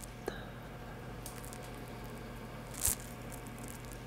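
Quiet room tone with a low steady hum, a small click just after the start, and one short sniff about three seconds in, as pipe tobacco in a glass jar is smelled.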